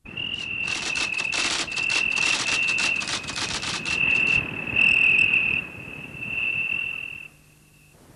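An insect trilling: a steady, high-pitched trill broken by short gaps, with dense irregular crackling over the first four seconds or so. The trill stops a little after seven seconds in.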